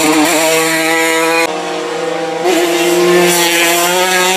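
Racing motorcycle engines held at high revs as the bikes corner, a steady high engine note with brief pitch wobbles. About a second and a half in, the sound changes abruptly to another bike.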